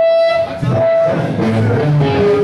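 A live rock band's music starting up: a held high note, then low electric bass notes coming in about half a second in.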